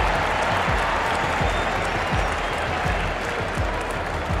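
Crowd applauding in a steady wash of clapping, with low thumps running underneath.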